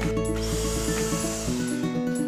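Background music over an electric hand mixer whirring as it beats egg whites with sugar; the whirring stops about one and a half seconds in as the beaters are lifted out.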